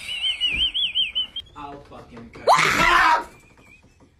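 Person screaming in fright: a high, wavering shriek for about the first second and a half, then a short, loud scream about two and a half seconds in.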